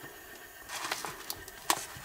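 Faint handling noise: a light rustle of wires being moved, with a few small sharp clicks, the sharpest a little before the end.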